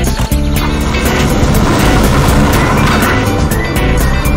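Background music with a car driving off mixed in: the beat drops out in the middle as a rush of engine and tyre noise swells and fades.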